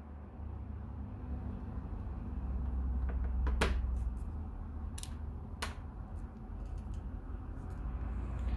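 Hands handling a small white plastic Xiaomi Mi 360 security camera, with a low handling rumble and three sharp plastic clicks between about three and six seconds in.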